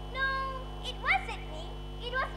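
A girl's high-pitched wordless voice: a held high note, then short sliding rising-and-falling cries about a second in.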